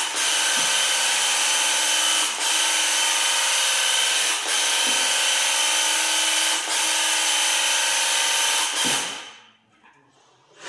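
Graco handheld paint sprayer running and spraying, a steady loud buzzing whine. It pauses briefly about every two seconds as the trigger is released between passes, then stops near the end.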